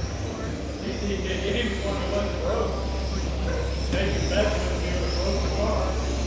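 Indistinct voices of several people talking in a large indoor hall, over a steady low hum.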